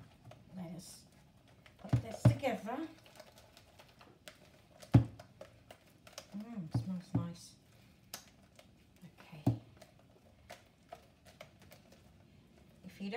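A spoon stirring a thick banana and flour batter in a plastic mixing bowl, knocking against the bowl sharply about two, five and nine and a half seconds in, with softer clicks and scrapes between.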